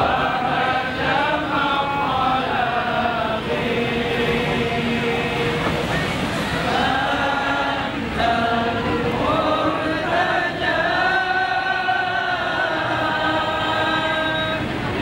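A group of voices chanting an Islamic devotional song together in sinoman hadrah style, in long sung phrases with short breaks between them.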